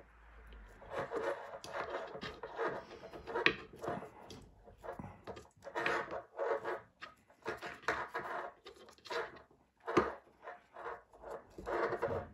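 Nylon 550 paracord scraping as it is pulled and tightened through a braided bracelet, in an irregular run of short scrapes, with a sharper click about three and a half seconds in and another about ten seconds in.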